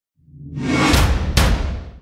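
Logo-intro sound effect: a whoosh that swells up over the first half-second, then two sharp hits about half a second apart over a deep low rumble, fading out near the end.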